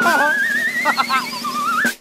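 A high, wavering whistle-like tone with a quick vibrato that slides slowly upward, dips and rises again just before it stops, over a steady hiss, with a few short voice sounds mixed in.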